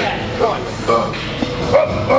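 Short, barked shouts and effort grunts from men's voices as a lifter rocks a pair of very heavy dumbbells up from his knees into position for a bench press, over background music.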